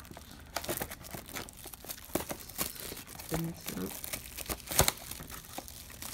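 Clear plastic shrink-wrap on a cardboard box crinkling and tearing as it is picked and peeled off, in irregular crackles with a sharper snap about five seconds in.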